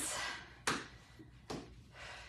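Sneakered foot tapping down on the floor during standing knee drives, two short thuds a little under a second apart.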